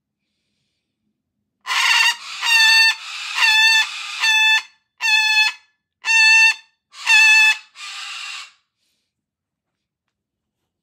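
White cockatoo calling: a run of about eight loud calls, each about half a second long and held on one steady pitch. The calls come about once a second, and the last one is weaker.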